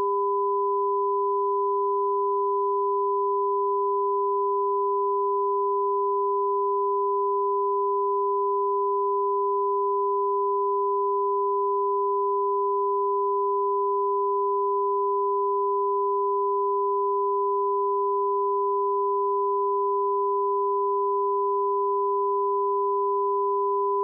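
Broadcast line-up test tone sent with colour bars: two steady pure tones, a lower and a higher one, sounding together without a break.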